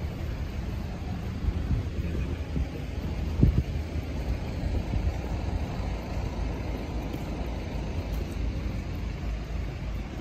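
City street ambience: a steady low rumble of road traffic, with a single short knock about three and a half seconds in.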